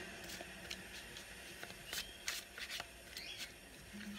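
Tarot cards being handled and shuffled: a scatter of faint, light clicks and taps of card on card.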